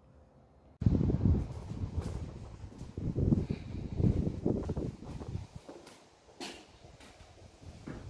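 Near silence, then about a second in a sudden run of muffled low thuds and rumble from a handheld phone being jostled while its holder walks, easing off after about five seconds.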